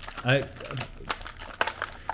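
Small hinged plastic Bakugan toy being folded shut by hand into a cube: a run of small plastic clicks and handling rattles.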